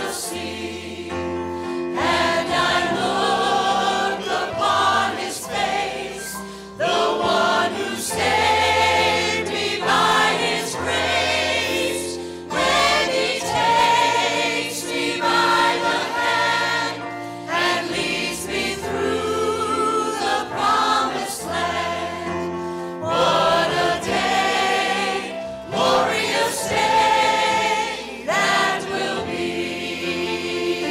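Church choir singing a gospel song, led by soloists singing into handheld microphones, with sustained low accompaniment notes beneath.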